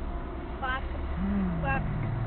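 A car's engine idling while the car stands still, heard from inside the cabin as a steady low hum, with brief voice sounds inside the car.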